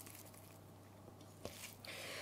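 Faint soft squishing of raw ground beef being rolled into a ball between the palms, with a small click about one and a half seconds in.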